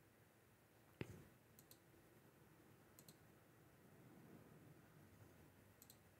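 Faint computer mouse clicks over near-silent room tone: one sharper click about a second in, then a few quieter clicks in close pairs.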